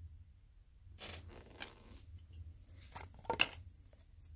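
2016 Donruss Optic football cards being handled and slid across each other by hand: a soft rustle about a second in, then a few light clicks and taps near the end.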